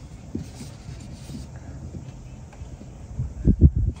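Clamp mount for a GPS unit being tightened onto a car dashboard: quiet handling with a few faint clicks, then a quick run of low knocks about three and a half seconds in.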